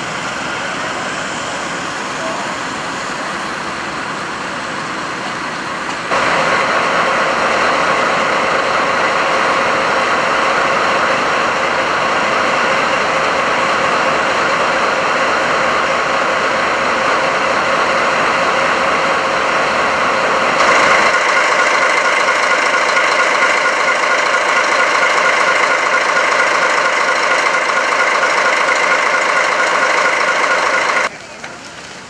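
Diesel engines idling steadily in three takes. First a quieter engine runs; then, from about six seconds in, comes the louder, even drone of a JR DD51 diesel-hydraulic locomotive's twin V12 engines idling. About 21 seconds in it grows louder again, heard close to the locomotive's open engine compartment.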